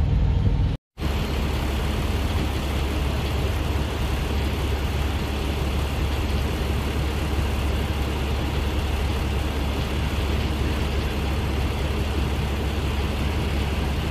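Semi truck's diesel engine running steadily at its exhaust stacks, a constant low rumble with a wide hiss over it. A brief cut to silence comes just under a second in.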